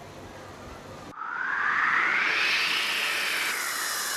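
About a second of faint room hum, then a sudden change to a synthesized whoosh: a hissing sweep whose pitch rises and then falls. This is the transition sting that goes with a TV programme's title graphic.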